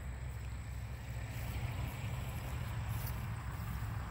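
Polaris Ranger 900 XP's parallel-twin engine idling with a steady low rumble.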